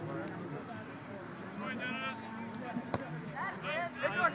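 A soccer ball kicked once with a sharp thump about three seconds in, as a corner kick is taken, among distant shouts from players and spectators on the field.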